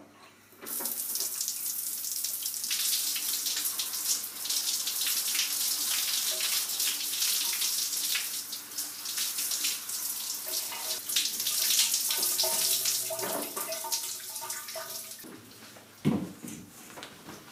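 Shower running: water spraying from the shower head onto the person and the tiled floor. The spray starts about half a second in, grows fuller a couple of seconds later, and stops shortly before the end.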